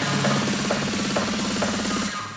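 Techno track mixed on DJ decks: a steady four-on-the-floor beat at about two beats a second over a sustained low bass drone.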